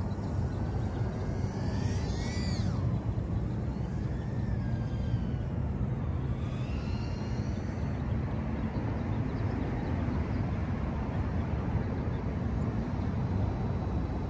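The high whine of a micro FPV quadcopter's brushless motors and 40 mm three-blade props, gliding up and down in pitch as the throttle changes, most clearly about two and seven seconds in. Underneath runs a steady low rumble.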